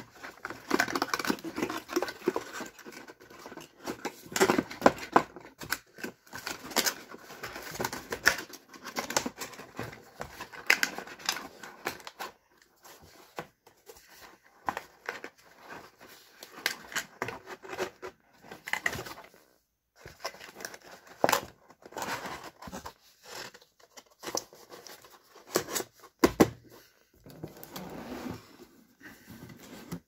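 Cardboard box packaging being handled: flaps and inserts scraping, rustling and tapping in irregular bursts, busiest in the first twelve seconds, with a few sharper knocks near the end.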